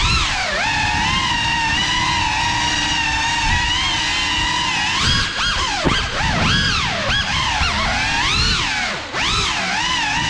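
Cinelog 35 cinewhoop quadcopter's motors and ducted propellers whining, holding a fairly even pitch for a few seconds. Then the pitch swoops up and down quickly as the throttle is worked through turns, with a short drop in the whine near the end.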